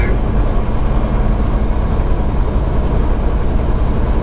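Semi truck's diesel engine and road noise, a steady low drone while cruising at highway speed.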